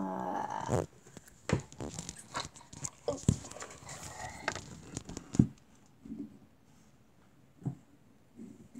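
A brief voice-like sound, then a run of knocks, clicks and rustles for about five seconds as the recording device is handled, moved and set down. It goes quiet after that.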